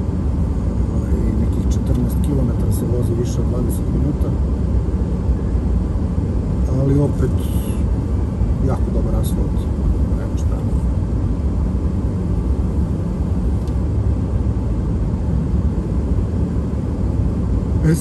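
Steady low rumble of tyres and engine heard from inside a car's cabin while driving along a winding mountain road.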